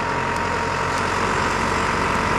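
Box truck driving along the road, a steady engine and tyre noise that grows slowly louder as it approaches.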